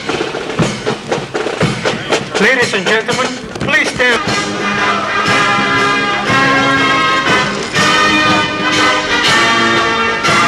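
Military band playing, brass to the fore, with steady held notes.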